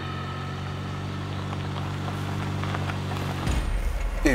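A car driving slowly at night on a rough unpaved road, heard as a steady, even drone of several held tones. Near the end it changes to a deeper low rumble, as heard inside the car.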